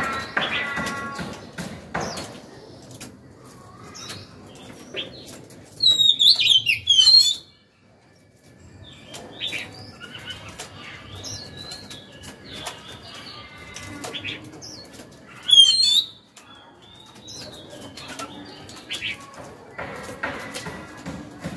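Caged oriental magpie-robin flapping and hopping about its cage: repeated wing flaps and short knocks against the perches and bars, with soft chirps. It sings two short, loud phrases of sweeping whistled notes, one about six seconds in and one around sixteen seconds.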